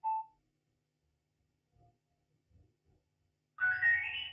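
A short electronic beep, then a brief chime near the end: the Bluetooth board of a Nesty GR-33 sound bar signalling as a phone pairs and connects, heard through a pair of bare TV speakers.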